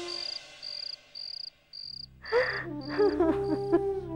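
Crickets chirping in high, regular pulses about twice a second, the night ambience over the house exterior. About halfway through, background music comes in with a low sustained drone and a sliding melodic line, and it takes over as the chirping stops.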